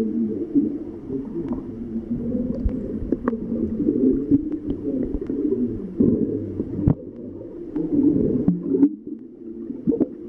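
Muffled underwater sound picked up by a camera held under the water: a dense, churning low rumble with scattered sharp clicks, briefly quieter about nine seconds in.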